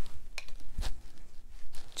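A few light taps and knocks from handling watercolour tools at a metal paint tin, each one short and separate.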